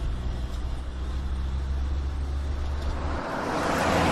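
Car running with a steady low hum, then the rush of the car driving by, growing louder toward the end.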